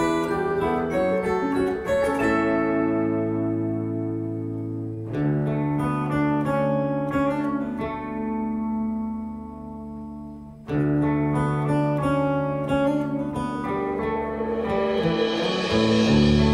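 A band playing a slow instrumental passage led by strummed acoustic guitar with glockenspiel. There are three chords, each struck and left to ring for about five seconds, and a hiss builds near the end.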